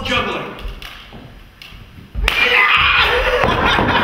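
A man's loud voice bursting in suddenly about two seconds in and carrying on to the end, with thuds of plastic juggling clubs knocked down onto the stage floor.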